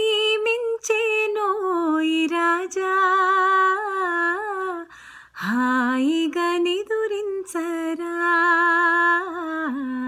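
A woman singing a slow Telugu lullaby unaccompanied, in long held notes, with a short breath pause about five seconds in and a falling note that ends near the close.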